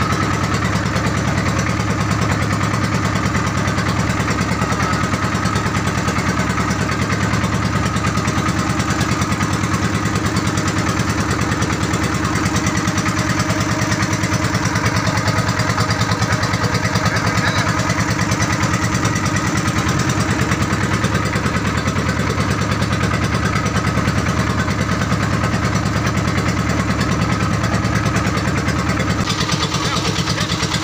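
An engine running steadily at an unchanging speed, with a fast, even pulse.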